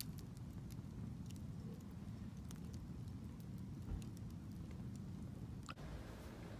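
Wood logs burning in a fire pit, crackling with scattered sharp pops over a low steady rumble.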